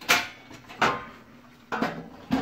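Three short knocks about a second apart, each dying away quickly: handling noise around an open metal computer case.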